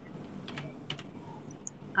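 A few scattered keystrokes on a computer keyboard, short sharp clicks mostly in the first second, over faint room noise.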